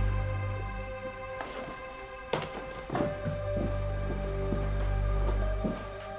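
Tense film-score music of sustained held tones over a low bass drone, broken by a few thuds and knocks as a person climbs in through a house window; the sharpest knock comes a little after two seconds in.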